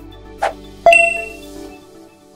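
Logo-animation sound effect: a short burst of noise, then a bright ding that rings and fades, over background music that stops near the end.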